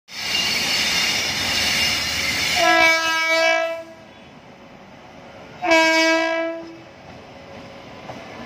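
An Indian Railways WAP-7 electric locomotive sounding its air horn as it arrives: two blasts, each about a second long, about three seconds apart. A loud steady rushing noise fills the first two and a half seconds.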